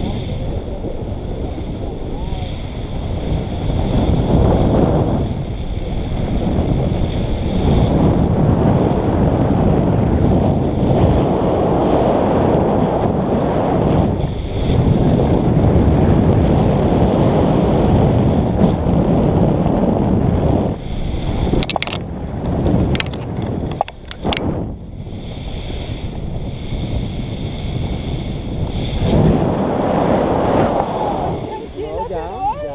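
Wind rushing over an action camera's microphone in flight under a tandem paraglider, loud and gusting, with a faint steady high tone above it. A few sharp clicks come near the three-quarter mark.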